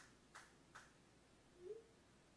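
Near silence: room tone with three faint short ticks in the first second and a faint brief rising hum near the end.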